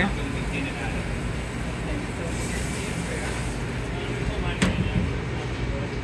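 Steady hum of a commercial kitchen's ventilation and equipment, with faint voices in the background and a single sharp clack a little over halfway through.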